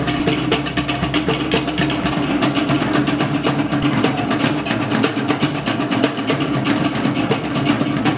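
Live Polynesian drumming: a fast, steady rhythm of struck wooden slit drums and a large drum, played as accompaniment to dancing.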